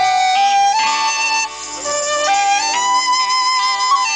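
A live band playing a slow traditional-style tune through PA speakers: a high melody line of long held notes, changing note about once a second, over low sustained chords.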